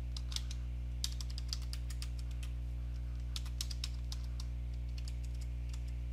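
Computer keyboard typing in two short runs of keystrokes, over a steady low hum.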